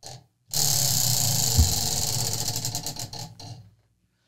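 Tabletop prize wheel spinning, its pointer clicking rapidly against the pegs, the clicks slowing until the wheel stops about three and a half seconds in. A low thump partway through.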